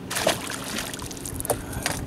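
A small splash about a quarter second in as a released spotted bass drops into the lake, followed by two sharp knocks, likely pliers or a rod clattering against the boat.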